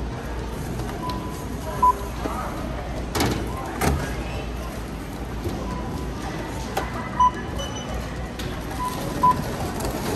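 Checkout barcode scanner beeping as items are scanned: three short, high beeps about two seconds in, around seven seconds and near the end. Knocks of goods being handled come in between, over a steady store background.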